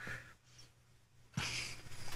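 Quiet room tone from a studio microphone channel: near silence at first, then from about halfway a faint hiss with a low steady hum.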